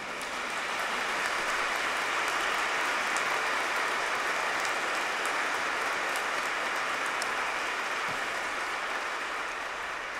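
Congregation applauding, a dense even clatter of many hands that builds over the first second, holds steady, and eases slightly near the end.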